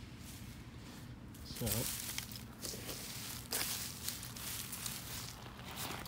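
Irregular scuffing and crackling of dry bark mulch and soil being disturbed underfoot and by hand, with a sharper crunch about three and a half seconds in.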